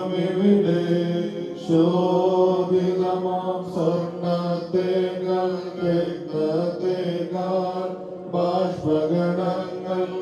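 Syriac Orthodox liturgical chant sung by a priest into a microphone, held, bending notes in phrases of about two seconds each.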